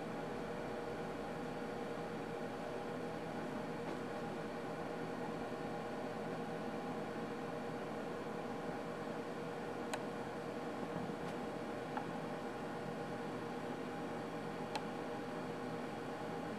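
Steady room tone: an even hiss with a low hum, and a couple of faint ticks about ten and fifteen seconds in.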